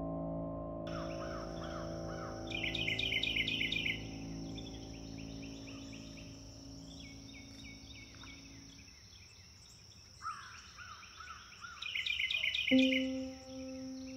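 Songbirds chirping and singing in rapid trills, over a steady high insect-like drone, as a soft piano chord dies away; two new soft piano notes come in near the end.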